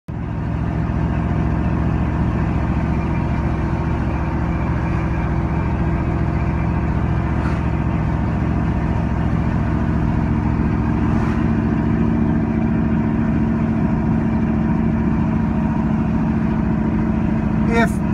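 Steady engine hum and road noise heard inside the cabin of a moving vehicle, with two faint clicks in the middle.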